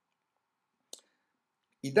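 Near silence broken by a single short click about a second in, just before a man starts speaking again.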